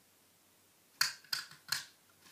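Handheld three-quarter-inch circle craft punch cutting through cardstock: a quick run of about four sharp clicks starting about a second in.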